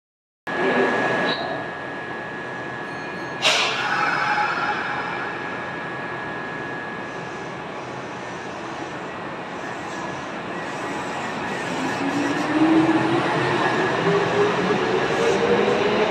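Kintetsu 8800-series electric train starting away from a station platform. There is a short, sudden burst of noise about three seconds in. From about twelve seconds the traction motor and gear whine climbs steadily in pitch and grows louder as the train accelerates.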